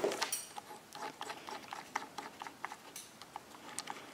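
Faint, irregular metallic clicks and ticks of a steel hex socket-head bolt being turned by hand into a threaded hole in a telescope mount's mounting plate.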